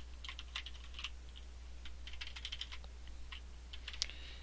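Typing on a computer keyboard: faint, scattered key clicks in short quick runs.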